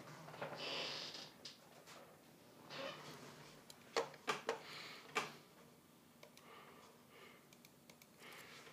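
Soft breathing and sniffing close to the microphone, with a few sharp clicks around the middle, as of something being handled on a desk.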